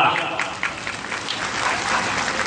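Audience applauding, many hands clapping together.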